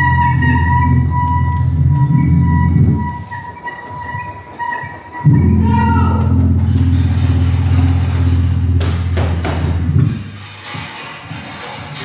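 Free-improvised music: a dense, steady low drone from electric guitar and electronics drops out about three seconds in and cuts back in suddenly just after five seconds, under a thin, high held saxophone note that stops around six seconds. After that a spray of sharp clicks and crackles runs over the drone until it fades near the end.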